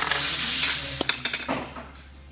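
Small plastic toys being handled and rummaged through: a rustling scrape for about the first second, then a few sharp clicks as pieces knock together.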